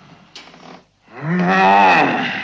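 A man's deep, drawn-out groan, the creature's wordless voice as he strains to sit up. It starts about a second in, swells loud and rises slightly in pitch, after a short breathy sound near the start.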